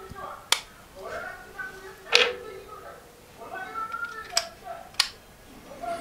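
Sharp plastic clicks as AirPods-style wireless earbuds are set into their plastic charging case and the case is handled: one about half a second in, a louder one at about two seconds, and two more near the end.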